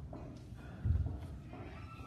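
A single dull thump a little under a second in, over a steady low hum in a large room.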